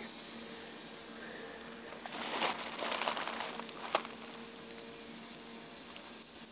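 Papery envelope of a bald-faced hornet nest crinkling as it is handled in a gloved hand, a rustle about two seconds in lasting about a second, then a single sharp click about four seconds in.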